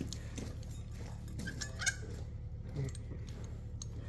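A few faint metal clicks as a hole saw arbor is handled and fitted into a steel hole saw, over a steady low hum.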